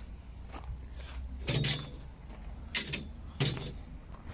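Footsteps crunching on gravel, a few separate steps, over a steady low rumble. Two short hummed voice sounds fall between the steps.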